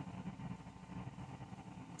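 Faint room tone: a low, steady hum with a little hiss.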